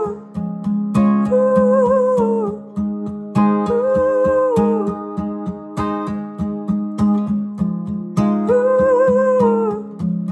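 Acoustic guitar with a capo strummed in a steady rhythm, under a man's wordless sung or hummed melody in three held phrases that each fall away at the end.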